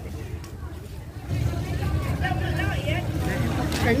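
People talking in the background over a low rumble that grows louder about a second in.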